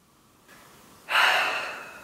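A woman's gasp of delight: a loud, breathy rush of air starting about a second in and slowly fading.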